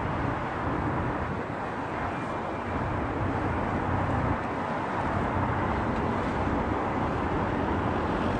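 Steady street traffic noise: a low, even rumble of passing road vehicles.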